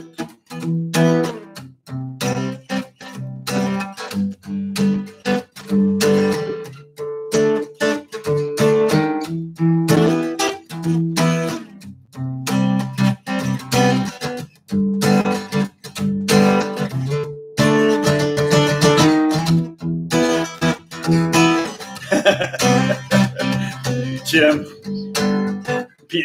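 Steel-string dreadnought acoustic guitar strummed in a rhythmic 16th-note groove, low strings hit on the kick-drum beats and chords on the snare beats, with the chords changing and a few brief breaks between phrases.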